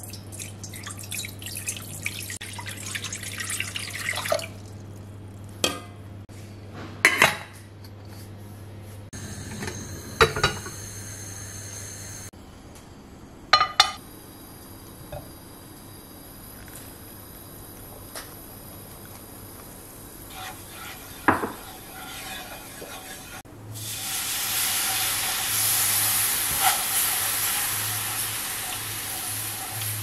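Water poured from a measuring jug into a stainless steel pot holding a whole cauliflower, followed by a few sharp knocks and clinks of cookware. Near the end comes a loud, steady sizzling as liquid goes into a hot nonstick frying pan of butter and flour and is stirred.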